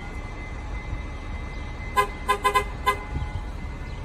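Transit bus horn tapped in a quick series of about five short toots, about two seconds in, over a low steady engine rumble: the warning honks given before backing up.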